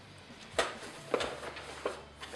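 Handling sounds from small boxes of .22 rimfire cartridges being put away and rummaged for in a canvas gun pouch: after a quiet start, three sharp clicks and knocks come about half a second apart.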